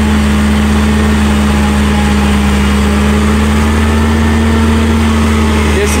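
Massey Ferguson 4275 tractor engine working steadily under load in first gear with the reduction range, together with the PTO-driven forage harvester chopping tall sorghum and blowing it into the trailer. It is a constant, even drone: the tractor has enough power to cut only at crawling speed.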